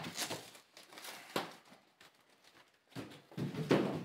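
Rustling and crinkling of foam packing wrap and cardboard being handled during an unboxing, in scattered bursts with a brief lull about two seconds in and a louder burst of rustling near the end.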